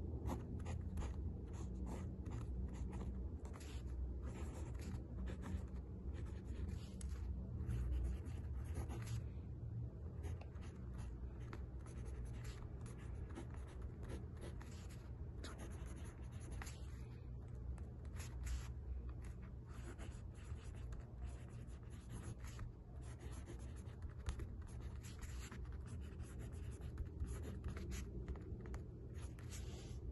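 Pen scratching on lined paper in quick, irregular strokes as someone writes by hand in cursive, heard close up over a low steady hum.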